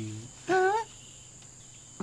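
Crickets chirring steadily, with a brief pitched vocal cry that rises and then falls about half a second in.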